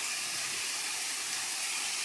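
Steady rain falling on a pool and its surroundings, an even hiss.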